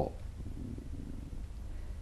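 A pause in speech that leaves a low, steady background hum.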